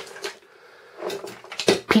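Light clicks and knocks of a small plastic model-railway transformer and its cable being picked up and handled, mostly in the second half.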